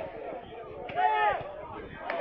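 A brief shout from a voice out on the pitch about a second in, over low outdoor background noise.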